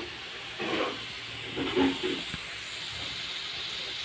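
Pork chops sizzling in a hot flat griddle pan, a steady hiss.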